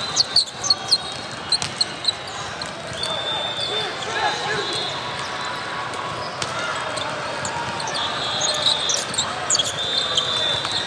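Volleyball rally in a large hall: several sharp smacks of the ball in the first two seconds, short high squeaks of sneakers on the court, and players' voices and calls.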